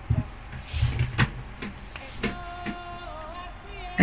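A few soft knocks and rustles from hands working a crochet hook into rag-strip fabric, with a low thump about a second in and faint held tones in the middle.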